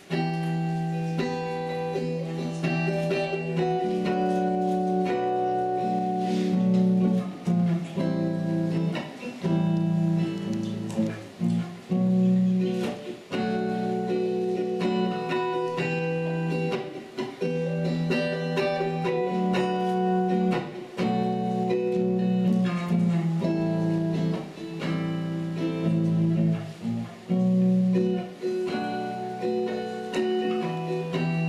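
A solo acoustic guitar plays an instrumental intro, picking chords in a repeating pattern.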